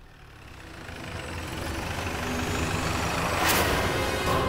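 Jeep engine approaching and growing louder, then a crash about three and a half seconds in as the jeep smashes through a stack of cardboard boxes.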